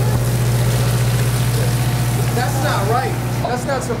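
Steady low hum of an idling tour bus. Water from a bucket splashes onto the ground for the first couple of seconds, and voices chatter from about halfway.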